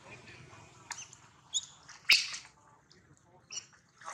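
A few short high-pitched squeaks and chirps from macaques swimming in a pond. The loudest is a sharp burst about two seconds in.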